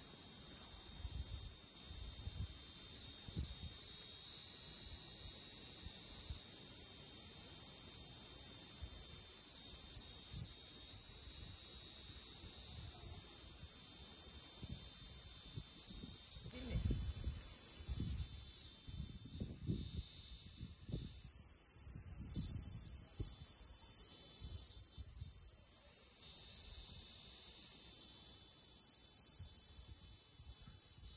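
Cicada calling: a loud, continuous high-pitched buzz. About two-thirds of the way through it breaks up into short gaps, then runs steadily again near the end.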